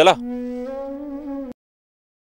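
Background score: a single held, reedy note, stepping slightly up in pitch partway through, which cuts off suddenly about one and a half seconds in.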